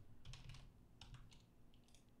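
Faint keystrokes on a computer keyboard: a handful of separate light taps as a value is typed in.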